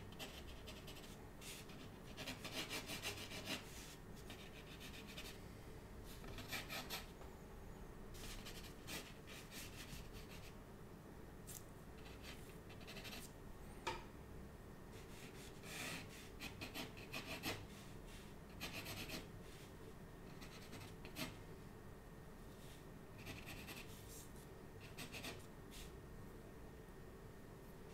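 Graphite pencil sketching on textured watercolour paper: faint, intermittent bursts of scratchy strokes a few seconds apart, with one light tap about halfway through.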